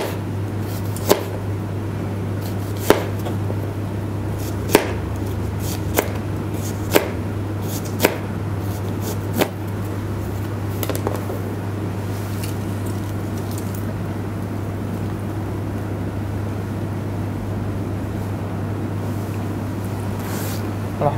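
A knife cutting an onion on a cutting board: separate knocks of the blade hitting the board every second or two, fewer and fainter in the second half. A steady low electrical hum runs underneath.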